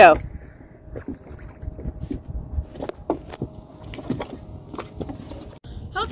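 Water splashing and sloshing in short irregular bursts around a swimmer beside an inflatable dinghy, with a faint steady hum underneath.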